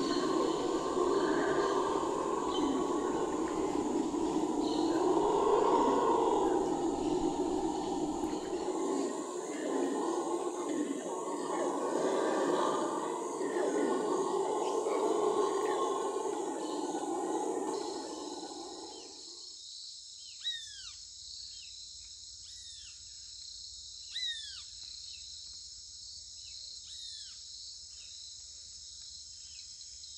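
A troop of red howler monkeys calling in a loud, drawn-out chorus of roars that swells and fades in waves. It stops about two-thirds of the way through, leaving steady high insect buzzing with a few short falling chirps.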